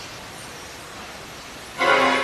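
Steady outdoor background hiss, then near the end a sudden loud, sustained horn tone with several overtones.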